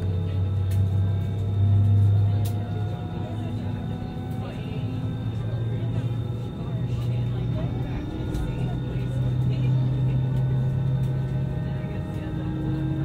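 Airbus A320 cabin noise while taxiing: a steady low drone with thin whining tones from the jet engines at low thrust, the drone shifting up slightly in pitch a few times as the aircraft rolls.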